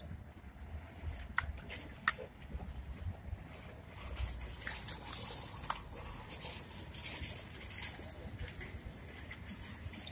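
Hands handling a small action camera and its clear plastic waterproof housing: a few sharp plastic clicks and a stretch of rustling in the middle as the camera is fitted into the case.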